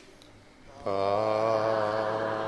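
A man's voice starts chanting a Buddhist Pali blessing a little under a second in, holding one long, slightly wavering note.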